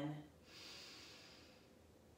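A woman taking one big breath in: a soft rush of air lasting about a second that slowly fades out.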